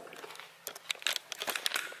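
Handling noise: irregular crackling and rustling clicks, starting about two-thirds of a second in, as the handheld camera is moved about and rubs against a fleece sleeve.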